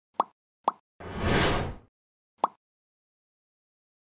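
Logo-intro sound effects: two short pops in quick succession, a brief swoosh of noise about a second in, then a third pop.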